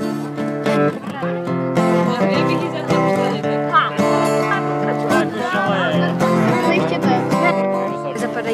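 Acoustic guitar being strummed, chords changing every second or two, with children's voices talking over it.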